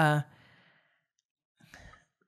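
A man's hesitant "uh" trailing off into a breathy sigh, then silence and a faint intake of breath near the end.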